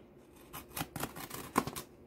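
A small blade slitting the packing tape along a cardboard box's seam: a run of short scratchy cuts and clicks.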